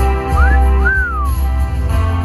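A person whistles two notes, a short rising one and then a longer one that rises and falls away, over a live band playing a slow song with guitar and bass.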